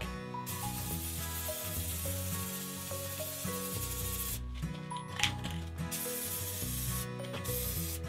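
Aerosol spray-paint can hissing as black paint is sprayed on: one long burst of about four seconds, then several shorter bursts.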